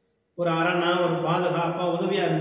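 A man's voice. After a brief silence he draws out a single word, holding it at a steady pitch.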